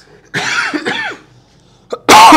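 A man's brief wordless vocal sound about half a second in, under a second long, with two quick rises and falls in pitch.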